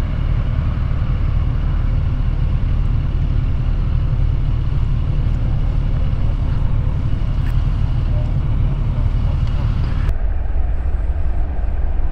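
Kawasaki Ninja 1000SX's inline-four engine idling steadily, with traffic noise around it. The higher hiss drops away about two seconds before the end.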